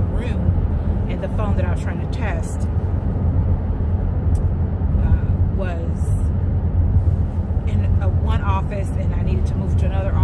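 A car cabin fills with a steady low drone of road and engine noise while a woman talks over it.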